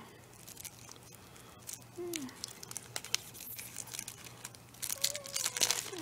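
Clear plastic wrap being torn and crinkled off a stack of trading cards: scattered crackles and rustles that grow busier near the end.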